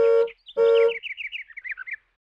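Cartoon sound effects: two short honks like a toy car horn, then a fast twittering run of chirps, each sliding down in pitch, the whole run falling and fading toward the end.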